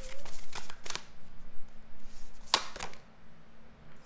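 Tarot cards shuffled by hand, a quick run of card flicks in the first second, then a single sharp click a little past halfway.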